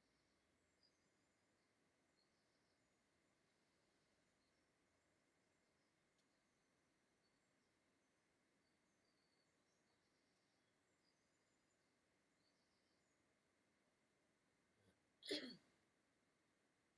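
Near silence: room tone with faint scattered high chirps. About fifteen seconds in comes one short voice sound that falls in pitch, such as a breath or a brief utterance.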